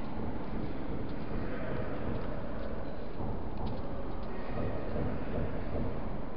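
Steady background noise of a large indoor hall, with visitors moving about and faint indistinct voices, and a few light ticks.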